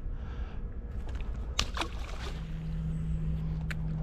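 Fishing rod and reel being cast: a few sharp clicks over a steady low rumble. A steady low hum starts about halfway through.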